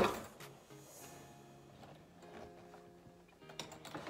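A single knock at the very start, then faint background music with a few light clicks and knocks from a hard-shell suitcase being lifted and handled.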